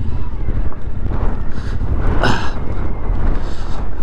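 Strong wind buffeting the microphone in a dense low rumble over a motorcycle rolling slowly on a gravel road, with a brief louder rush about two seconds in.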